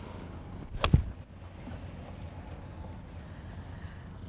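Golf iron striking a ball off the turf: a single crisp impact just under a second in, with a brief dull thud of the club meeting the ground.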